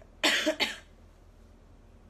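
A young woman coughs twice in quick succession, about a quarter second in.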